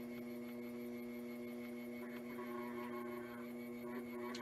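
Electric potter's wheel running with a steady motor hum.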